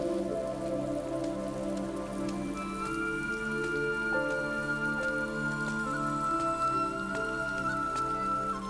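Slow background music of long held notes, a high melody line stepping from one sustained note to the next over a low chordal bed, with a soft steady rain-like patter underneath.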